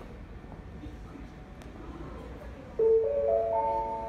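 Station public-address chime: four notes rising one after another about a quarter second apart, starting near three seconds in and ringing on together, the attention chime that comes before a platform announcement. Before it only quiet platform ambience.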